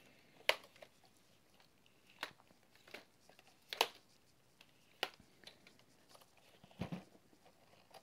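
Plastic arms of a foldable quadcopter drone (MJX Bugs 4W) clicking and knocking as they are folded in against the body by hand: a handful of short, separate clicks spread over several seconds.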